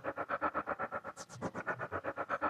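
Sempler sampler-sequencer playing a fast 1/16-step pattern of short slices chopped from a recording of springs, about nine even pulses a second, through its lowpass filter with the resonance being turned up.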